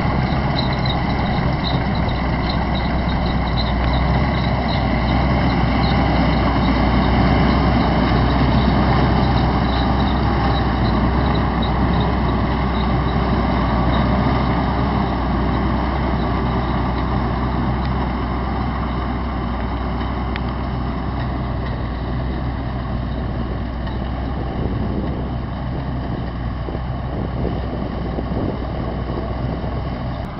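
A tractor-mounted corn picker at work in standing corn: the tractor engine runs steadily under load while the picker gathers the row. The sound grows a little fainter in the second half as the machine moves away.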